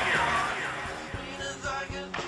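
Grunge rock song with distorted electric guitar, with a few sharp hits in the second half.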